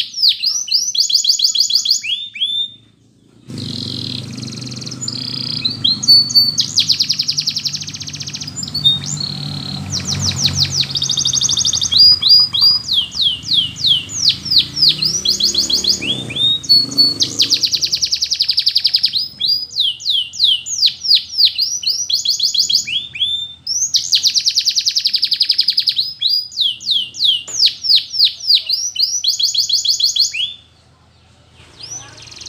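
Domestic canary singing a long, loud song of repeated falling whistles and fast rolling trills, with a brief pause about three seconds in. A low background rumble runs under the song from about four seconds in until about eighteen seconds.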